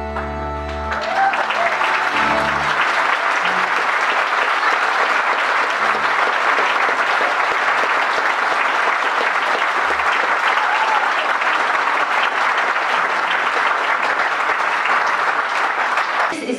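A folk band's final chord on guitars and double bass rings out and stops about a second in, with the bass sounding on briefly. Then the audience applauds steadily and loudly.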